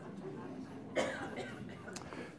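A single cough about a second in, over a faint murmur of voices in a large hall.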